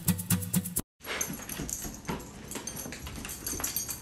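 An acoustic guitar song ends with its last strums, stopping abruptly just under a second in. After a brief gap of silence, the quieter sounds of a standard poodle follow, with faint, irregular clicks.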